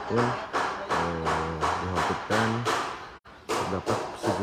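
Background music with a steady beat and held low notes, cutting out briefly near the end.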